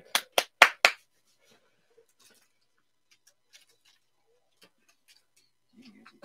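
Four sharp clicks in quick succession in the first second, followed by a few faint, scattered ticks.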